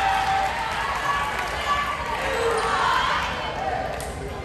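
Players and spectators calling out and chattering in an echoing school gym between volleyball rallies. The voices overlap and no words stand out.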